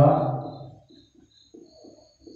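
A man's voice draws out one spoken word that fades over about the first second, followed by a few faint short sounds.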